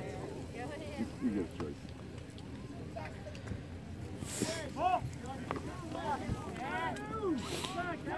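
Distant shouts and calls from lacrosse players and coaches across the field, over steady outdoor background noise, with two brief hissing bursts about four and seven and a half seconds in.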